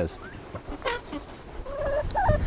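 Chickens clucking, a few short calls and a rising one near the end.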